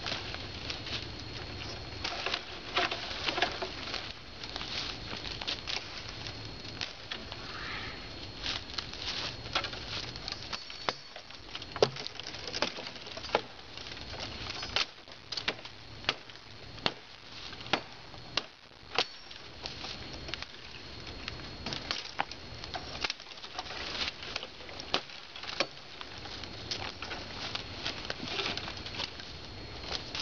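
Footsteps crunching through dry leaf litter and brush, with a steady rustle and frequent sharp, irregular snaps and cracks of twigs and branches.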